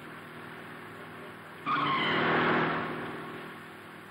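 A car's tyres screech in a skid, setting in suddenly a little before halfway and fading away over about a second and a half, over a low steady car hum.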